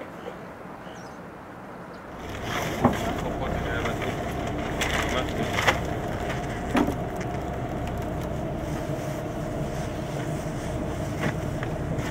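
Boat's engine running steadily with a low hum, starting about two seconds in after a quieter stretch, with a few sharp knocks of equipment being handled on deck.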